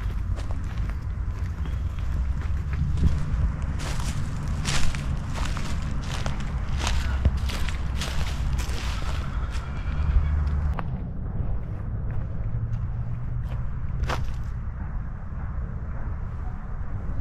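Footsteps on a dirt bush track covered in leaf litter, about a step every half to three-quarters of a second, thinning out after about ten seconds, over a steady low rumble.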